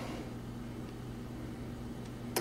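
Steady low hum with a faint even hiss and nothing else happening: the room tone of a studio with its gear switched on.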